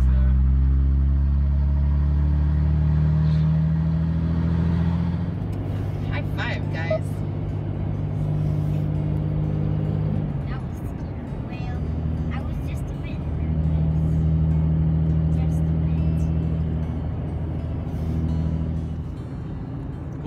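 A road vehicle's engine heard from inside the cab while driving on the highway. Its pitch climbs over the first few seconds as it accelerates and steps down twice at gear changes.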